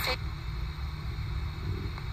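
RadioShack 12-587 portable radio sweeping the FM band as a ghost box, giving a steady hiss of static over a low, steady rumble.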